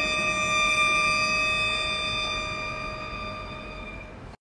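Violin holding one long, high bowed note that slowly fades away.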